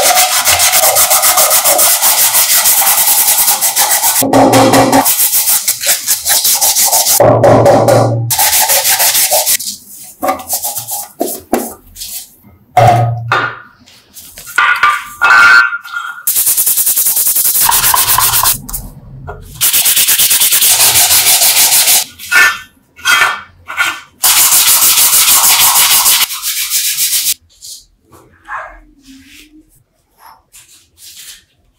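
Sandpaper rubbed by hand against a small metal part in long runs of fast back-and-forth strokes, broken by short pauses; it quietens over the last two seconds.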